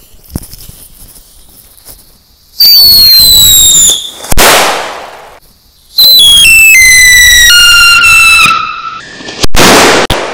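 A jumbo Whistling Thunder firecracker wrapped in a paper roll going off. After a faint hiss, a shrill whistle falls in pitch and ends in a sharp bang. A few seconds later a second whistle steps down in pitch and ends in another bang.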